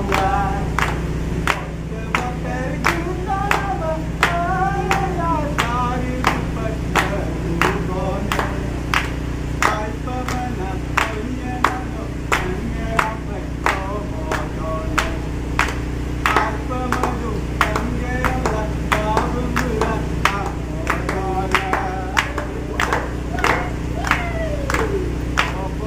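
A group of men clapping their hands in a steady rhythm, about two claps a second, while singing together.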